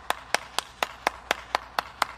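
One person clapping hands in a steady, even rhythm of about four claps a second.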